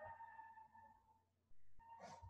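Near silence: a faint steady tone fades away within the first second, over a low hum.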